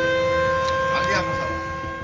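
A siren wailing: one long, steady tone whose pitch rises slowly, ending near the end. A faint voice comes through about a second in.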